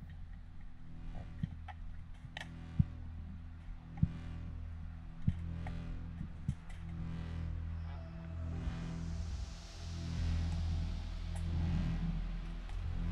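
Underwater sound picked up through a camera housing: a low steady hum with scattered sharp clicks, and a hiss of water that swells from about two-thirds of the way in.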